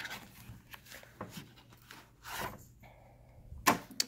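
Cardboard tarot card box being handled as the deck and its folded paper insert are slid out: scattered soft scuffs and rustles, with a short rustle a little past halfway and a sharp tap near the end.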